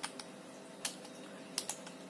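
Computer keyboard keys pressed a few times, single clicks spaced about a second apart, over a faint steady hum.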